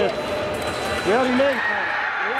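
A person's voice calling out in a large hall, with two drawn-out syllables about a second in, over the hall's steady background noise.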